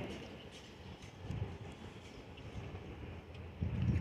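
Faint, uneven wind noise rumbling on the microphone outdoors.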